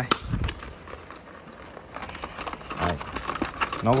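A stiff plastic blister pack holding a ratchet handle and bit set being handled, giving a run of irregular light clicks and crinkles.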